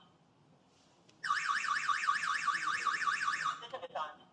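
Electronic alarm siren of a PG106 wireless home alarm host, a fast warble sweeping up and down several times a second. It starts about a second in and cuts off after about two and a half seconds.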